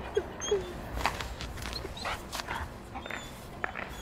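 A husky-type dog whining and yipping with excitement, in short high cries that bend up and down.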